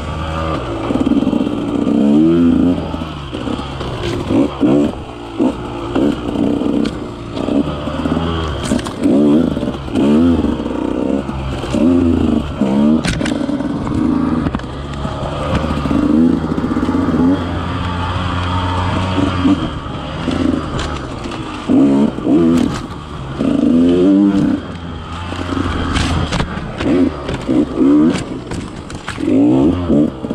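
KTM 150 XC-W two-stroke single-cylinder dirt bike engine being ridden on rough trail, the throttle opened and shut again and again so the revs rise and fall every second or two. Scattered short knocks from the bike over the rough ground.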